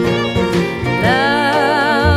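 Live acoustic country band playing: acoustic guitar and resonator guitar. About a second in, a sustained, wavering lead line with vibrato comes in over them.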